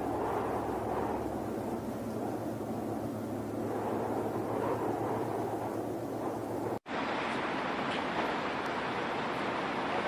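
Steady rushing, wind-like noise, cut off abruptly about seven seconds in and followed by a similar steady background hiss.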